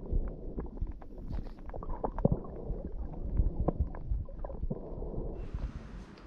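Muffled underwater sound picked up by a camera in its waterproof housing: a low rumble of water movement with many sharp clicks and crackles. Near the end it cuts to quieter room tone.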